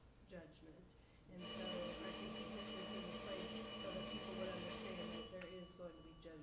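A steady electronic tone made of several high pitches over a hiss. It starts suddenly about a second and a half in, lasts about four seconds and cuts off near the end, with faint talking underneath.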